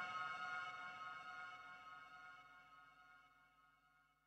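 Closing fade of an electronic deep dubstep track: a held synth chord of many steady tones dying away steadily until it is barely audible.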